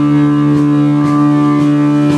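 A live rock band's amplified electric guitars holding one loud sustained chord that rings on steadily like a drone, with light taps about twice a second.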